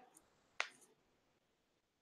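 A single short click a little over half a second in, against near silence.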